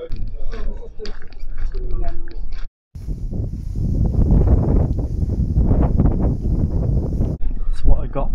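Faint indistinct voices in a small bar. After a cut, wind buffets the microphone outdoors as a heavy, rumbling noise for about four seconds.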